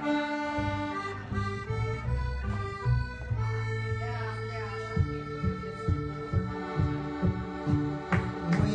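Piano accordion playing an instrumental break of a bluegrass-style song, holding long sustained chords. An upright bass plucks a low bass line underneath, with its notes more distinct in the second half.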